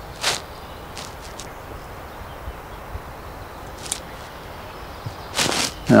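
Soft handling sounds of monofilament fishing line and pliers being worked by hand while a leader knot is tied. There is a short sharp click just after the start and a few light ticks later, over a steady low background hiss.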